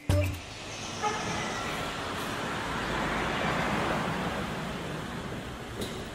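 Road traffic noise, a steady rush that swells toward the middle and eases off again.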